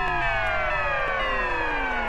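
The opening of a rock song's intro: a sustained chord of several tones sliding slowly and steadily down in pitch, like a siren winding down, before the band comes in.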